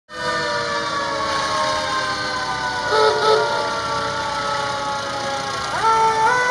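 Vintage fire truck's mechanical siren slowly winding down in pitch, with a short wavering tone about halfway. Near the end it is wound up again in a quick rising wail that then holds steady.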